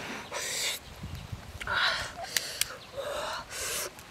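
A woman blowing hard through pursed lips three times, cooling a hot boiled egg in her hands, with two short sharp clicks about halfway through.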